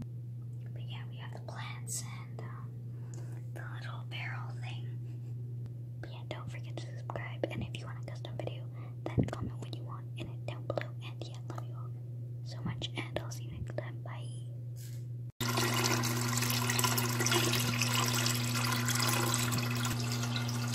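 Water running into a small plastic aquarium over its gravel and ornaments, starting abruptly about fifteen seconds in and becoming the loudest sound. Before it there are quiet, scattered clicks and scratchy handling sounds over a steady low hum.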